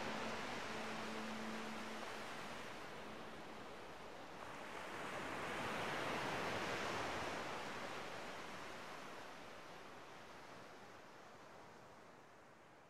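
Sea surf breaking and washing on a sandy cove: a wave swells up about five seconds in, then the sound fades out.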